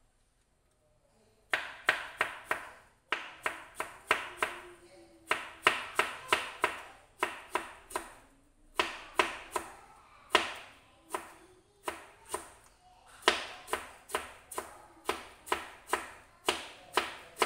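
Kitchen knife slicing fresh bamboo shoots into thin strips on a cutting board: runs of sharp knocks of the blade on the board, about three to four a second, with short pauses between runs. The chopping starts about a second and a half in.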